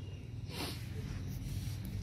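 A steady low hum under faint workshop background noise, with a short breathy rustle about half a second in.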